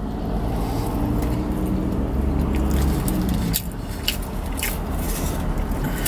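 A person chewing a large mouthful of bacon cheeseburger, with wet mouth sounds and a few sharp clicks, over a steady low rumble.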